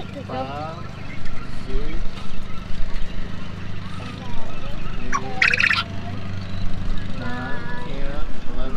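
Coturnix quail calling, with one sharp, high, buzzy call about five and a half seconds in and shorter calls that bend in pitch near the start and end, over a steady low hum.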